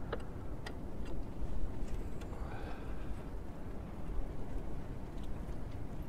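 A few sparse, light clicks and taps of a hand tool working at a sawmill's power feed belt and pulley, over a steady low background rumble.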